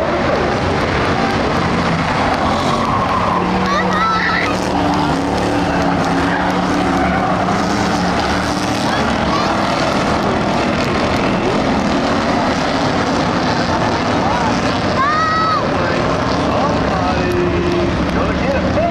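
A field of Ford Crown Victoria V8 stock cars racing on a dirt oval, their engines blending into one loud, steady noise as the pack circles.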